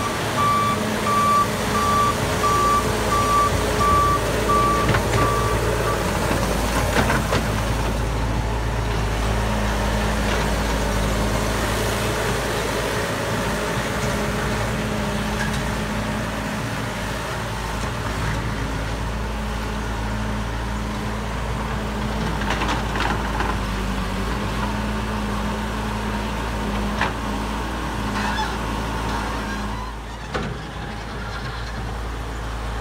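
Bobcat loader's engine running steadily as it grades dirt, its back-up alarm beeping in an even series for the first six seconds or so. Occasional clanks follow later on.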